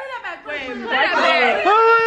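Several people talking and exclaiming over one another in a large room, with one voice holding a long drawn-out note near the end.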